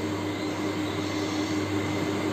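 A steady low hum under an even hiss of background noise, with no sudden sounds.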